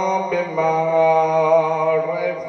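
A man's voice chanting a devotional recitation into a microphone, holding long melodic notes with a slight waver and a brief break about a third of a second in.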